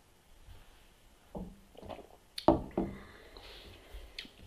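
A few gulps of beer, then a pint glass set down on a wooden table with a sharp knock about two and a half seconds in, the loudest sound, and a lighter knock just after.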